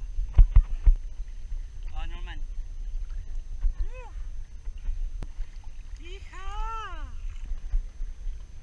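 Steady low rumble of wind buffeting an action camera's microphone, with a few sharp knocks about half a second in. Three drawn-out vocal calls rise and fall in pitch, at about two, four and six seconds in.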